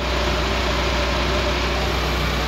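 Car engine idling steadily on a Weber 32/36-type two-barrel carburetor, its idle mixture screw set near maximum vacuum, just on the lean side.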